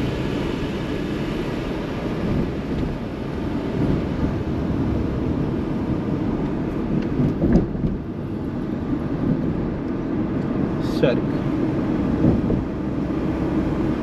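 Steady low rumble of a car driving along a city street, heard from inside the cabin: engine and tyre noise. There is a brief click about seven and a half seconds in and another about eleven seconds in.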